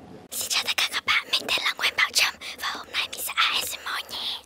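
ASMR whispering close into a foam-covered microphone: a steady run of soft, breathy whispered syllables, starting about a third of a second in.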